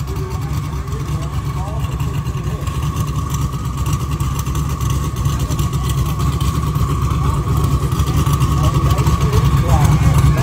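Engine of a modified 6th-generation Chevrolet Camaro drag car idling with a deep, steady rumble, growing a little louder toward the end as the car rolls closer. A thin steady high tone runs throughout.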